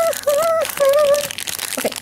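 Crinkling and rustling of a foil blind-bag packet being handled and torn open, under a short hummed tune that stops over a second in.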